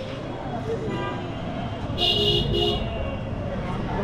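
A vehicle horn honks twice in quick succession, about two seconds in, over a steady murmur of street traffic and voices.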